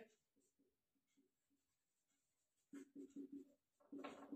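Faint squeaks of a marker on a whiteboard as letters are written in short strokes, with a quick cluster of strokes about three seconds in.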